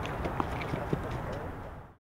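Outdoor ballfield background with indistinct voices, broken by two sharp knocks about half a second apart; the sound fades out at the end.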